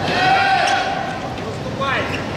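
Fencers' shoe soles squeaking on the piste as they step and lunge, with a few light footfalls; one long squeak in the first second and a quick rising squeak near the end.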